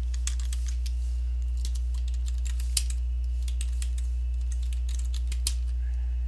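Typing on a computer keyboard: a run of short key clicks, with a sharper key strike about halfway through and another near the end, over a steady low electrical hum.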